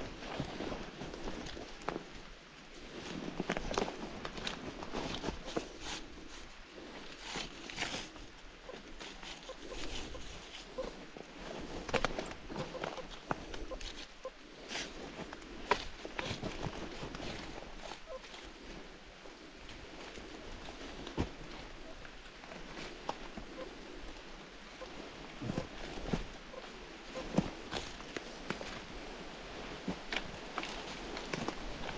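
Footsteps on forest-floor leaf litter and twigs, an irregular run of soft crackles with a few sharper clicks.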